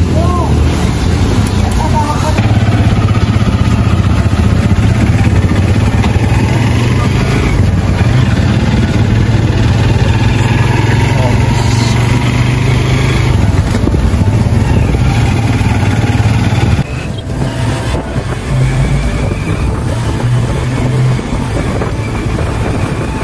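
Motorcycle engine of a Philippine tricycle running steadily as it drives along the road, heard from the sidecar with road and wind noise. About seventeen seconds in the low engine drone drops away and the sound becomes quieter and more uneven.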